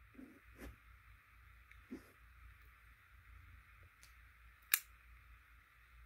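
Faint handling sounds of folding knives being taken out of and put into a foam-lined hard case, with one sharp click about three-quarters of the way through.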